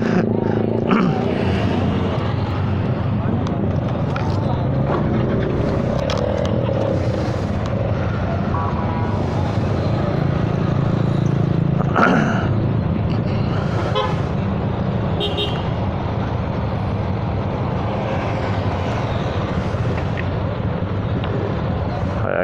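Motor scooter engines idling steadily, with a couple of short horn toots in the middle.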